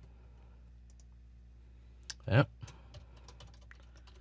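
Faint computer keyboard keystrokes and clicks over a steady low electrical hum, the clicks mostly in the second half.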